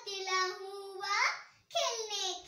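A young girl singing, holding long steady notes, with a rising glide about a second in and a short break for breath near the end.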